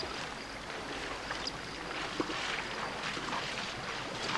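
A man wading through shallow river water, his legs splashing with each step in an irregular rhythm.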